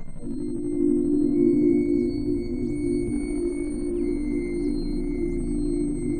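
Music: a steady low drone, with thin high tones held above it and short falling chirps sprinkled over the top.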